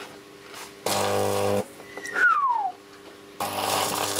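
Unballasted microwave-oven transformer arcing through a neon safety screwdriver: a harsh electrical buzz with a steady hum in it, about a second in for under a second, then again from about three and a half seconds on as the screwdriver's plastic burns. Between the two bursts comes a loud, brief falling whistle, and a faint transformer hum runs underneath.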